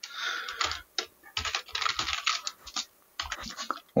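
Typing on a computer keyboard: keys clicking in quick, irregular runs, with a brief pause about three seconds in.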